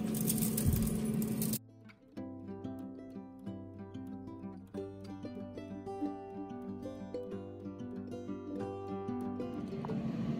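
About a second and a half of kitchen room noise with a steady low hum, then a sudden cut to quiet instrumental background music with held notes.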